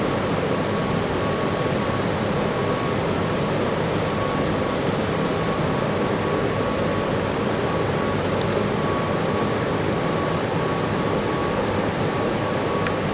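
Steady whooshing hum of a fiber laser marking machine running while it marks a plastic circuit breaker housing, with a faint high tone that comes and goes. A thin high hiss drops out about halfway through.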